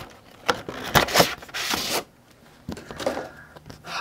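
Handling noise from a large trading card and its plastic packaging: a few short scrapes and rubs, with a longer swish about halfway through.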